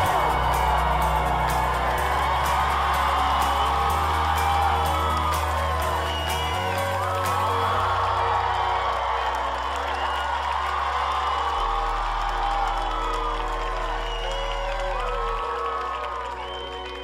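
Background pop music with a sustained bass line that changes note every second or two under layered melody, with what sound like crowd whoops mixed in.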